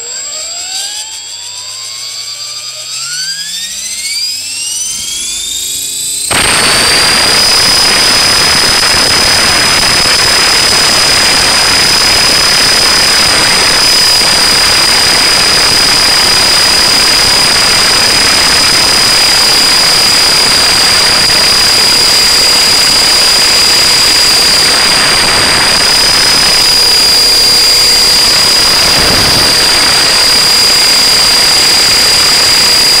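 E-flite Blade 400 electric RC helicopter's brushless motor spooling up from rest, a whine rising steadily in pitch for about six seconds. Then it suddenly turns into a loud rush of rotor wash across the onboard camera's microphone, with a steady high whine held over it as the rotor stays at flying speed.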